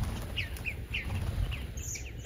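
Bluebirds giving a string of short, falling chirp calls as the flock flushes from a bird bath.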